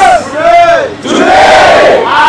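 A crowd shouting together, two long cries that each rise and then fall in pitch, with a brief dip between them.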